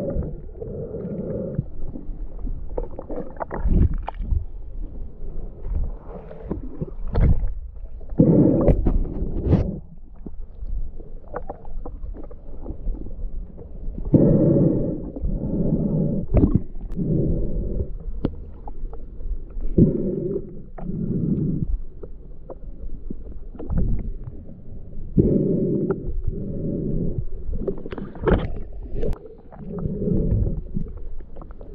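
Muffled underwater sound from a submerged camera: a snorkeler's breathing through the snorkel, in paired surges (in, then out) every five or six seconds, with scattered clicks and knocks of water and handling against the housing.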